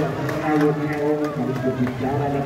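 Several voices talking and calling out over one another, from the players and spectators around a volleyball court.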